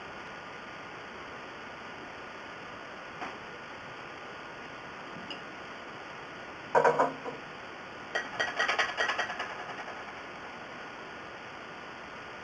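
Steady faint hiss, broken by a single knock about seven seconds in and then a rapid run of ringing metal clinks lasting about two seconds: a teaspoon against the pot as the vinegar is measured in.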